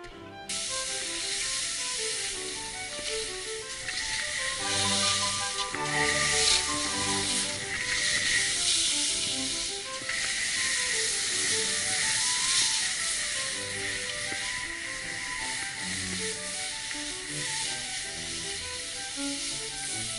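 Background music playing over a steady hiss of skis running fast over snow, which cuts in about half a second in.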